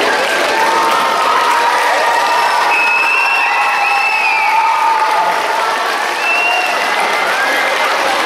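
Steady applause from an audience in a large gym, with high voices calling out over the clapping.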